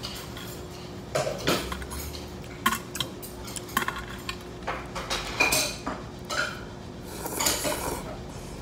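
Metal chopsticks clinking and scraping against a large stainless steel bowl as noodles are stirred in the broth: a dozen or so light, irregular clinks, one ringing briefly.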